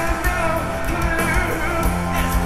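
Live rock band playing loud and without a break: electric guitars, bass and drums with cymbals, and a singer's voice over the top.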